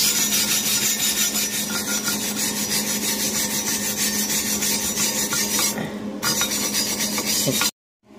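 Steel wire brush scrubbing back and forth over a fresh MIG weld bead on a steel C-notch plate, cleaning off the slag and spatter to check the weld. The scratchy strokes pause briefly about three-quarters of the way through, resume, then cut off suddenly near the end.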